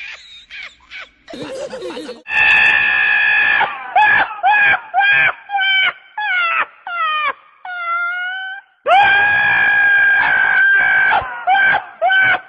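A donkey screaming in a high, human-like voice: one long held scream, then a run of short rising-and-falling cries about two a second, then a second long scream and more short cries.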